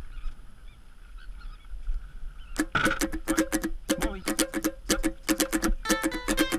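Low wind rumble outdoors with faint wavering calls in the background, then strummed acoustic guitar music starts about two and a half seconds in and carries on with quick, even strokes.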